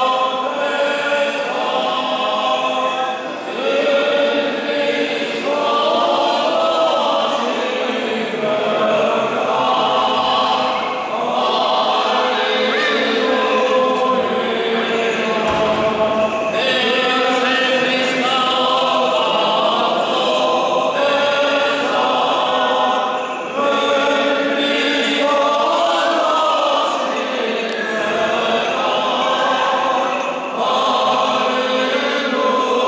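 Orthodox church chant sung by a group of voices together, a slow stepwise melody during a baptism service.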